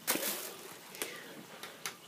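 Rustling handling noise of a cat being scooped up and lifted: a short burst of rustling at the start, then softer shuffling with a few light clicks.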